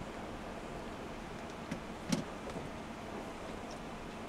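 Steady ride noise inside a moving passenger train compartment, with two short sharp knocks about two seconds in, the second one louder.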